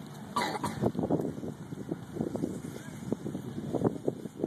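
Indistinct voices of people talking, in fits and starts, with a brief louder, higher sound about half a second in.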